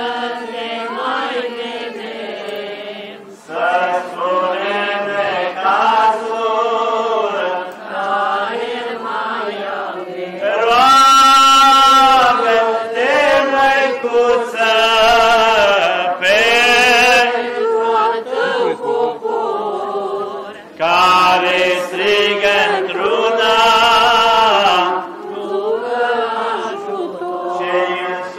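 Voices singing a Romanian Orthodox chant in long, sustained melodic phrases, rising louder in the middle and again later.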